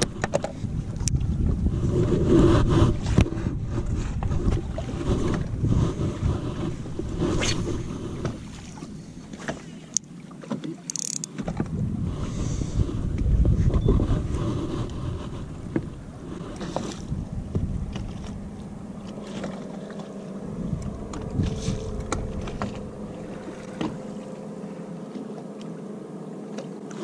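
Wind buffeting the microphone and water against a bass boat's hull, a rumble that comes and goes in gusts. Scattered knocks and clicks come from gear being handled on the deck. A faint steady hum sounds in the second half.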